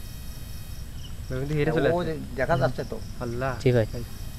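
Crickets chirping steadily in a night-time bamboo grove, with a man's voice speaking briefly over them from about a second and a half in.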